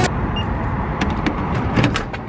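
Keycard hotel-room door lock and lever handle being worked: a few sharp clicks about a second in and near the end, over a steady low rumble.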